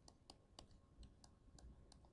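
Near silence, broken by a series of faint, irregular clicks from a stylus tapping and stroking on a tablet screen during handwriting.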